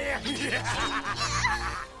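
A man snickering and laughing over background music with a steady bass line. The bass drops out near the end.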